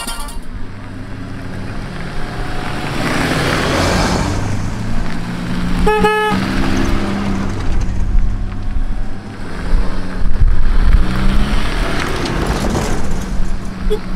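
Fiat Panda 4x4 engines running as a line of the cars drives slowly past on a dirt track, louder as they come close. A short car-horn toot sounds about six seconds in.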